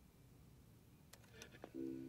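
Near silence, then a few faint clicks past the middle, and near the end a jukebox starting to play music in steady, held notes.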